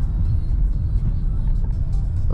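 Steady low rumble of engine and road noise inside the cabin of a 2005 Honda CR-V driving at a steady cruise.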